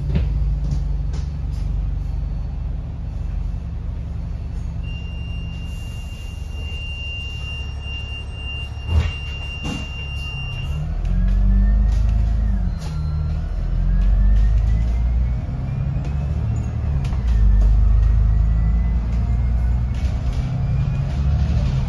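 Alexander Dennis Enviro500 double-decker bus heard from the upper deck on the move: a low engine drone, steadier at first, then from about halfway the engine revs rise and fall through the gears with a whine that climbs in pitch, drops briefly and climbs again as the bus gathers speed. A steady high beep sounds for several seconds in the first half, and there is a single knock a little before halfway.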